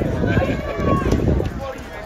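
Indistinct chatter of several people talking at once, with a low rumble of wind on the microphone.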